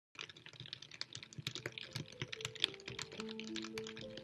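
Rain: many small, irregular drop hits patter throughout. Soft, sustained music notes come in about halfway and hold underneath.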